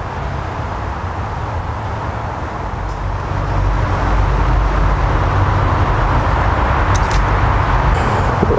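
Steady rumble and hiss of distant city road traffic, growing louder about halfway through.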